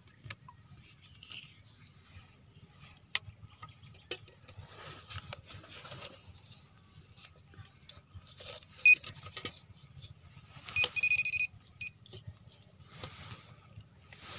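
Handheld pinpointer metal detector lowered into a tree hollow beeping: a short beep about nine seconds in, a longer tone around eleven seconds and a brief beep after it, the signal that it is picking up metal. Faint scattered knocks and scrapes as it touches the wood.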